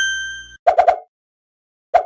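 Logo sting sound effect: a bright bell-like ding that rings and fades over about half a second, followed by a quick run of about four short, low pops.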